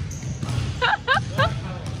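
Basketballs bouncing on a hardwood gym floor in a large, echoing hall, with a person's voice breaking in briefly about a second in.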